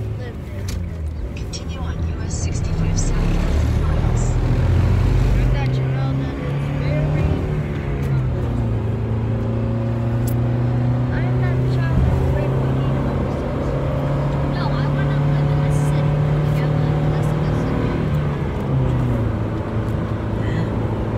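Steady engine and tyre hum inside a car's cabin cruising at highway speed, a little louder after the first couple of seconds.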